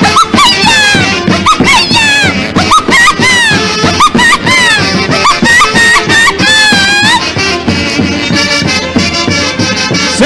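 Live huaylas band music: a saxophone-led wind section plays a fast melody of swooping, bent notes over a regular drum beat, settling into longer held notes about seven seconds in.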